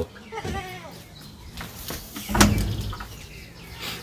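A calf in the pen calling with a short bleat-like bawl about two and a half seconds in, after a fainter call near the start.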